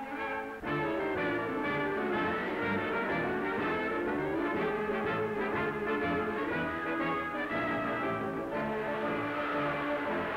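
Orchestral cartoon score with brass to the fore, coming in fully after a brief dip less than a second in.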